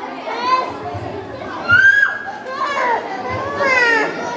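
Children's high-pitched voices talking and calling out, several at once, with the loudest call just before the middle.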